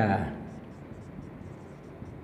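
Marker pen writing on a whiteboard: a run of faint short strokes after a word ends just at the start.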